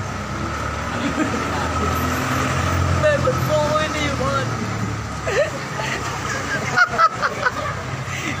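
A jeepney's diesel engine rumbling as it drives past, loudest about two to three seconds in and then fading, with faint street voices under it.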